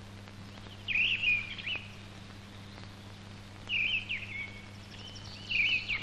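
Small songbird singing three short warbling, chirping phrases a couple of seconds apart, over a steady low hum.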